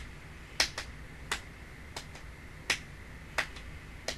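Sharp, short clicks at irregular intervals, about seven in four seconds, over a faint steady hum.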